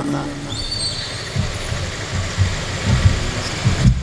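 Steady low rumble and hiss of background noise during a gap in speech.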